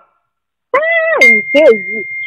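A short silence, then a person's voice speaking; a little past a second in, a steady high-pitched tone comes in and holds.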